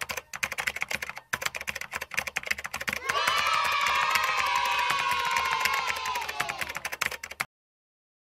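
Computer keyboard typing sound effect: rapid key clicks with a short break about a second in. From about three seconds in, a long held tone joins the clicks and slowly falls. Everything stops half a second before the end.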